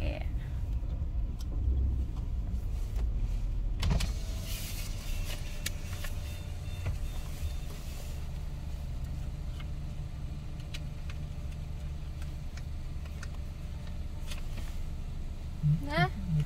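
Car engine idling, heard from inside the cabin as a steady low hum, with one sharp knock about four seconds in.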